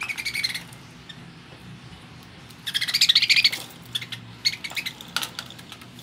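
Budgerigars chattering in rapid, high-pitched chirps and squawks: a short burst at the start and a louder, longer one about three seconds in, followed by a few sharp clicks.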